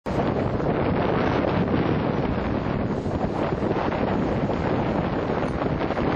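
Wind buffeting the microphone, a steady rough rush, with breaking surf behind it.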